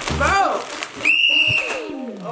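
A referee's whistle blown once: a steady, shrill tone lasting about a second, starting about halfway through, just after a voice shouts.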